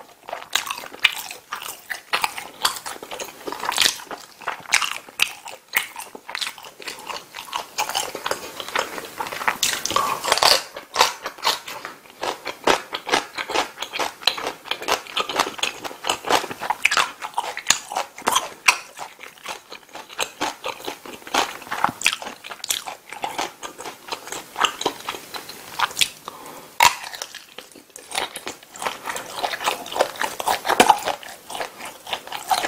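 Close-miked eating sounds: spaghetti in tomato sauce and a kielbasa sausage being bitten and chewed, a dense run of sharp, irregular wet mouth clicks.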